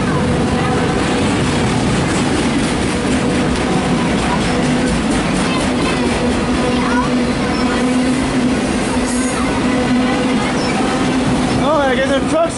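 Loaded autorack freight cars of a CSX train rolling past at close range: a loud, steady rumble of steel wheels on rail with a constant hum underneath.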